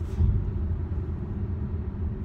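Steady low rumble of a car's road and engine noise heard from inside the cabin while driving, a little louder just after the start.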